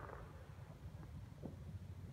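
Quiet outdoor background: a low rumble like wind on the microphone, with one faint tap about one and a half seconds in.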